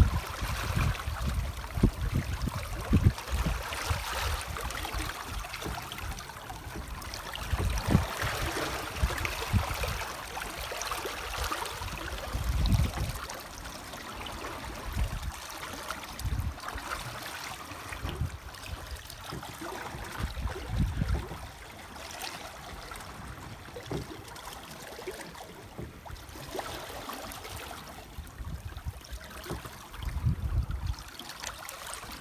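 Water rushing and splashing past the stern of a Sadler 290 sailing yacht under way, a steady hiss with irregular low rumbling swells of wind buffeting the microphone.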